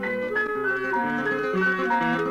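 Instrumental music from a trio of guitar, clarinet and piano: a quick melody of short notes over a bass line that steps from note to note.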